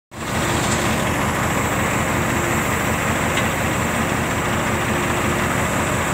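Heavy diesel earthmoving machinery running steadily: a constant, even engine drone with a fast low throb.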